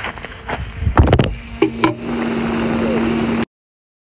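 A phone is handled and set down, with several knocks and thumps on its microphone in the first two seconds. A steady low hum follows, and the sound cuts off abruptly shortly before the end.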